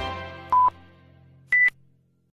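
Electronic theme music of a news intro fading out, with two short electronic beeps over the fade. The second beep comes about a second after the first and is higher and louder.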